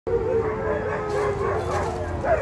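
A group of puppies howling together: one long howl held on a steady pitch while other howls waver up and down over it.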